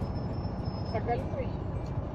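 Steady low rumble of a car heard from inside its cabin, with a brief soft vocal sound about a second in.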